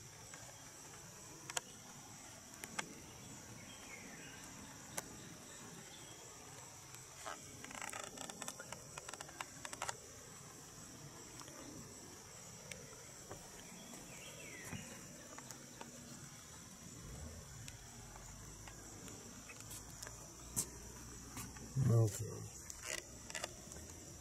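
Faint, steady high-pitched insect chorus, typical of summer crickets, with scattered clicks and a short stretch of rustling about eight seconds in.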